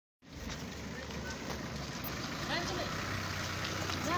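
Steady low rumble of vehicle traffic, with faint voices in the background.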